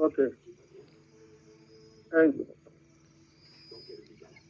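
Mostly speech: a man says 'ok', then about two seconds later a voice counts 'un' over a call. A faint, steady high-pitched tone runs underneath.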